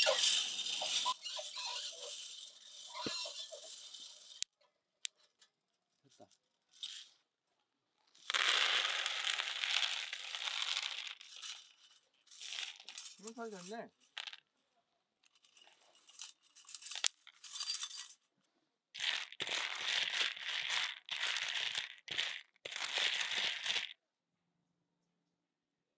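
Freshly roasted coffee beans rattling out of a wire-mesh drum roaster onto a woven bamboo winnowing basket, in several dry bursts of rattling with short pauses between.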